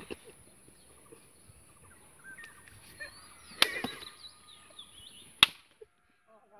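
Two sharp snaps about two seconds apart, the second, near the end, much louder, over faint bird chirps.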